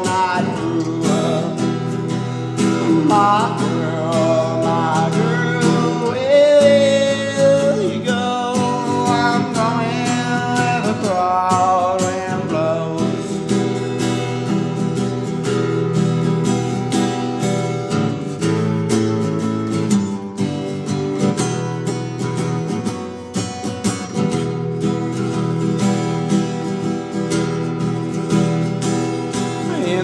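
Instrumental passage of a song on acoustic guitar, with chords ringing throughout. A sliding, wavering melody line runs over the guitar in roughly the first half.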